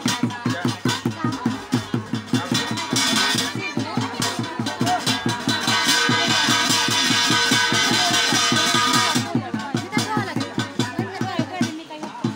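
Loud live achhari jagar folk music: a fast, even drumbeat with a voice singing over it. A denser, brighter layer joins from about three seconds in and drops away about nine seconds in.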